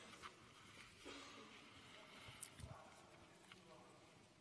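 Near silence: room tone with a few faint scattered clicks.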